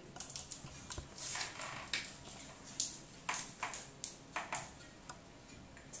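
Irregular light clicks and short crinkles of plastic acupuncture-needle packets and guide tubes being handled and opened, about a dozen small sounds spread over several seconds.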